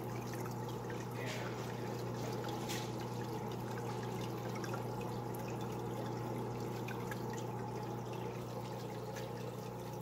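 Aquarium water trickling and bubbling steadily over a low, even hum, with a couple of faint splashes or clicks in the first few seconds.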